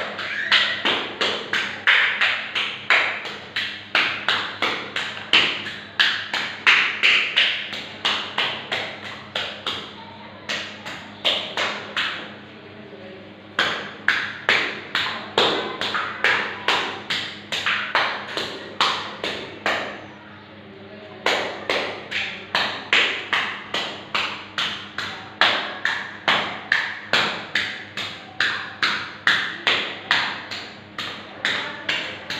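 A hand-held texturing tool dabbing wet wall putty to raise a stipple texture: quick slapping taps, about two to three a second, broken by a few short pauses.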